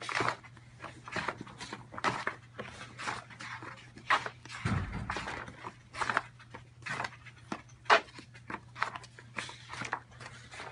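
Heavy wallpaper sample pages in a sample book being flipped one after another: a run of swishing rustles, about one a second, with a dull low thump about halfway through.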